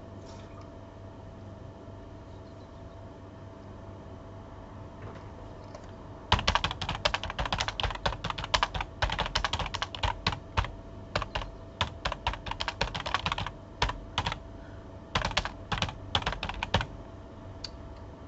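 Typing on a computer keyboard close to the microphone: after about six seconds of quiet room tone, a fast run of keystrokes goes on for about ten seconds, with a few short pauses.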